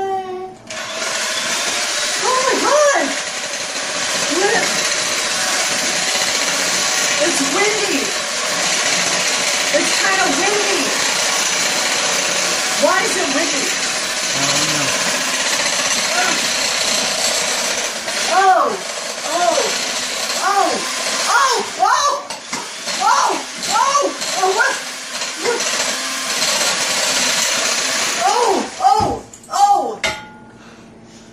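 Electric hand mixer running steadily with its beaters in a metal saucepan of batter. It starts about a second in and cuts off just before the end.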